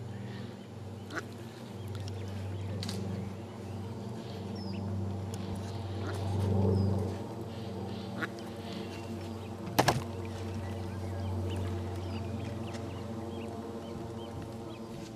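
Ducks quacking over a steady low hum, with a few sharp clicks; the loudest is a double click about ten seconds in.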